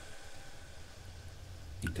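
A pause between spoken lines: a faint, steady low hum with light hiss. A man's voice begins right at the end.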